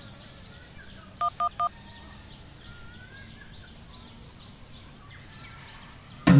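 Mobile phone keypad dialing tones: three quick beeps in a row about a second and a half in, each the same two-note tone.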